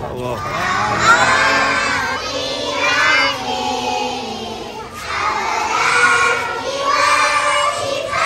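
A group of young children chanting together in unison in short repeated phrases, over the hubbub of a crowd.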